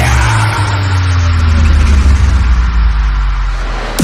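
Break in a frenchcore track: the kick drum drops out, leaving a heavy sustained bass with pitch sweeps gliding downward and the treble filtered away.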